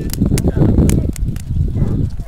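Wind buffeting the camera microphone, a heavy uneven low rumble, with a few sharp clicks.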